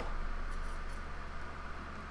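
A metal fork stirring and poking through hot, runny melted chocolate in a bowl, faint over a steady low hum.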